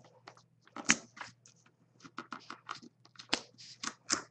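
A seam ripper nicking and tearing the threads of a treated burlap canvas, making it fray: a series of short, soft snips and scratches, the sharpest about a second in and more of them in quick succession in the second half.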